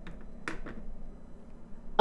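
Quiet pause in a voice-chat conversation: faint background hiss with a brief soft click about half a second in.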